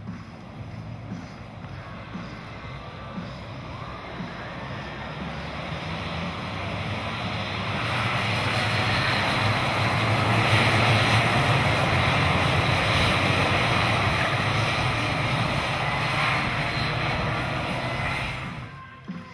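Engines of a pack of 125cc two-stroke racing karts under power as the race gets under way, growing louder over the first half and staying loud as the field runs together, then dropping away at the very end.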